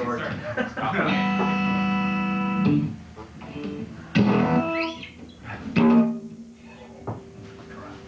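Electric guitar played through an amplifier in a few separate single notes: the first held for about a second and a half, then two more struck a couple of seconds apart, the last left ringing quietly.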